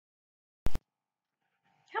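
A sharp double click a little over half a second in, then quiet until a woman starts to speak near the end.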